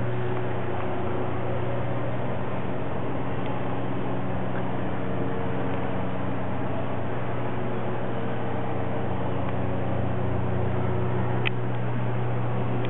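Steady low hum with a hiss over it inside an elevator car, unchanging throughout, with one short click near the end.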